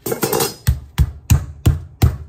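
Raw chicken breast being pounded flat on a foam meat tray over a counter, a quick rustle and then heavy, even thumps about three a second.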